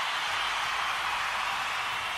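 Audience applauding, a steady even wash of clapping from a large crowd.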